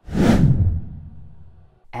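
A whoosh sound effect for a logo animation: it starts suddenly, sweeps down in pitch into a low rumble, and fades away over about a second and a half.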